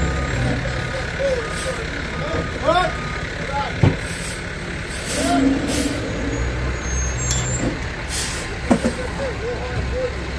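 Slurry seal mixing truck's diesel engine running steadily, with several short hisses of released air. A sharp knock comes about four seconds in and another near the end.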